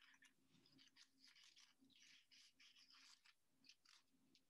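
Near silence, with faint, scattered rustling of paper as folded paper strips are handled and pressed onto a cardboard tube.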